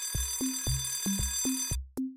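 An alarm-clock ring sound effect signalling that the countdown time is up: a steady, high ringing that stops just before the end. It plays over background music with a steady electronic beat.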